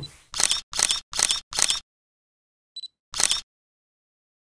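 Camera shutter sound effect: four shutter releases in quick succession, then a short high electronic beep and one more shutter release.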